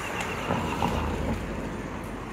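A car passing close by on a street, its engine and tyre noise swelling about half a second in and then easing off.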